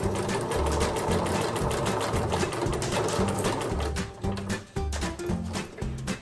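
Domestic electric sewing machine stitching elastic, the needle running fast and steadily for about four seconds before it stops.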